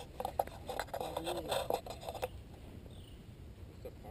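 Crackling, clicking microphone noise with a brief murmur of a voice for about two seconds, then a sudden drop to a quieter background with a few faint, high, falling chirps.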